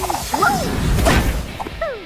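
Cartoon sound effects: short squeaky gliding vocal noises from an animated character, over a busy clattering, mechanical-sounding effects bed.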